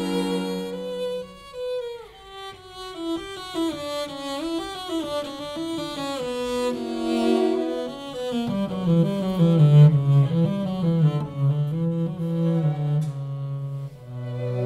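A string octet of two string quartets (violins, violas and cellos) playing a slow movement, Andante sostenuto. A held chord gives way to a stepwise melody over moving inner parts, and from about eight seconds in a low cello line comes to the fore.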